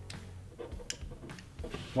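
Faint handling clicks from the Anvil-30 ballhead's clamp lever and metal body being worked back to the fully shut position, with one sharp click about a second in and a few softer ticks, over a low steady hum.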